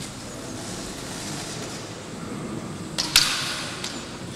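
Two sharp clacks of bamboo kendo shinai striking each other about three seconds in, ringing briefly in a large hall, over the hall's low background noise.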